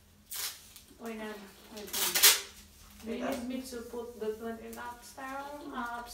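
A person's voice talking or vocalizing without clear words, with two short clattering noises, the louder one about two seconds in.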